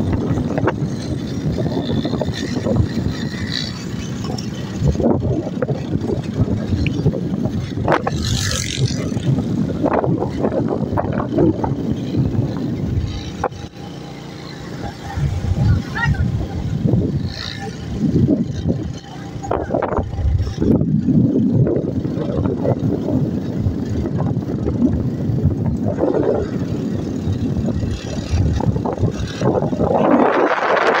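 Road noise from riding along in a moving vehicle: engine and tyre noise under uneven wind rumble buffeting the microphone, with a brief dip in level about halfway through.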